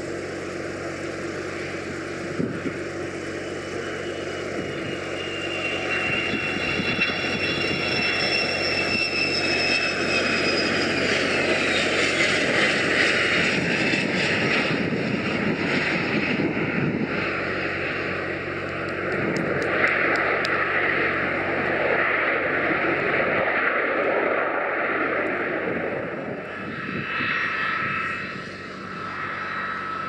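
Yakovlev Yak-40's three Ivchenko AI-25 turbofan engines on a landing approach and rollout. A high whine slides down in pitch as the jet passes, then gives way to a louder broad roar through the middle. Near the end the sound dips briefly and a new steady whine comes in.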